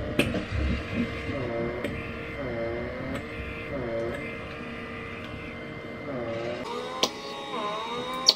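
Small battery-powered blackhead vacuum (pore suction device) running with a steady hum. Its pitch dips and recovers again and again as the suction nozzle seals against the skin of the nose and lets go. The hum cuts off a little before the end.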